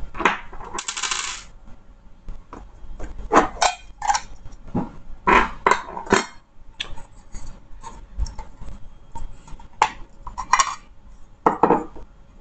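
Airbag control module housing being pried apart by hand: a run of sharp clicks, knocks and clatters of hard casing parts, with a short scraping rasp about a second in.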